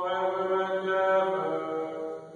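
Church music in a funeral Mass: long held notes, shifting to a new chord about one and a half seconds in.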